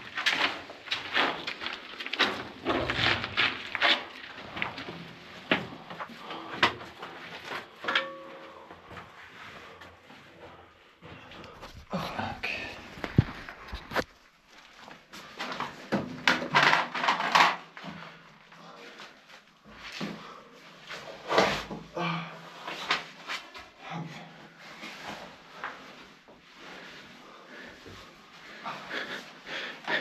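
Scuffing and scraping of shoes and clothing on gritty concrete and rubble, with scattered knocks, as a person climbs down through a round hole in a concrete bunker floor.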